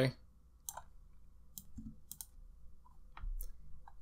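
A handful of separate, irregularly spaced clicks from a computer mouse and keyboard.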